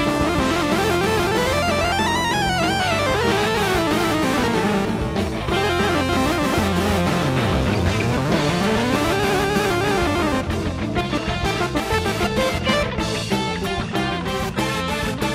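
Live rock band playing with electric guitar, its lead line sweeping up and down in pitch over a steady bass and drum backing. From about ten seconds in, sharp drum hits come to the front.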